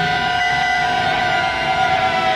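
Alternative rock music in which electric guitars hold long, steady, ringing tones that drone without a clear beat.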